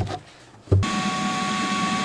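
Shop vacuum switched on about a second in and running steadily with a whine, its hose sucking debris out of a boat's battery compartment; a brief knock comes just before it starts.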